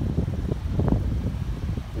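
Wind buffeting the microphone: a loud, uneven low rumble with no steady tone.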